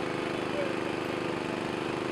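An engine running at a steady speed, an even drone that does not change, with faint voices in the background.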